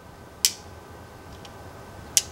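Small hard plastic 1/6-scale toy grenades and mines clicking against each other in the hand: one sharp click about half a second in, then a couple of faint ticks.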